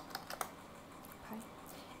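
Typing on a computer keyboard: a quick run of keystrokes in the first half second, then a pause and a few lighter key taps near the end, over a faint steady fan hiss.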